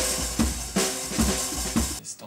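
Drum kit played in a steady beat, kick and snare strokes two or three times a second with cymbals ringing over them, stopping abruptly at the end.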